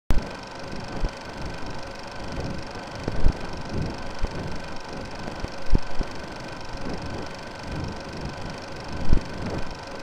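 Old-film countdown-leader sound effect: steady hiss and hum of a worn film soundtrack, broken by irregular crackles and a few louder pops.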